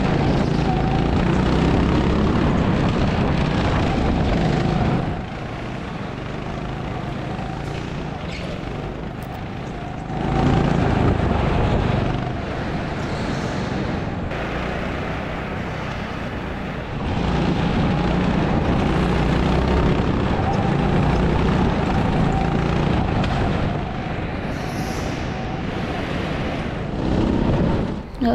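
Go-kart running at speed, its motor noise mixed with rushing wind on an onboard camera, getting louder and quieter in stretches of a few seconds.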